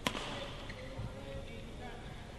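A single sharp crack of a badminton racket striking the shuttlecock right at the start, over the steady murmur of a sports hall crowd.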